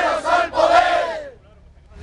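A crowd of protesters chanting a slogan in unison, loud shouted syllables in a steady rhythm that die away about a second and a quarter in.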